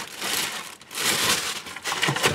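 Paper and packaging crinkling as items are rummaged out of a cardboard shipping box, in two spells of rustling.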